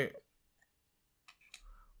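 Mostly quiet, then a few faint clicks and a soft rustle from about a second and a half in: trading cards being handled as the front card is moved off the stack.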